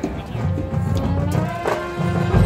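High school marching band playing live in the open air: brass hold sustained chords over loud low drums, coming in suddenly and louder at the start, with a sharp hit near the end.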